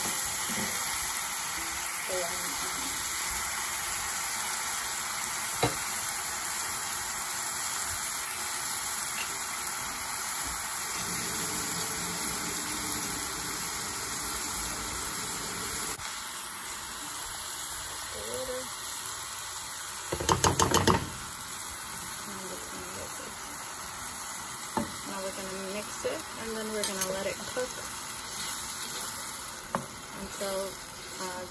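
Diced tomatoes and onions sizzling and simmering in oil and water in a pan, stirred with a wooden spoon, a steady hiss throughout. A little past two-thirds through comes a brief rapid rattle of knocks, the loudest sound.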